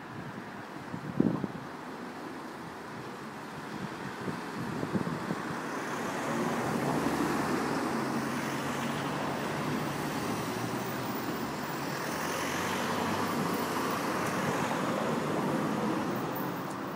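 Street traffic: a motor vehicle's engine and tyres, growing louder from about six seconds in and staying steady after that. A single sharp knock comes about a second in.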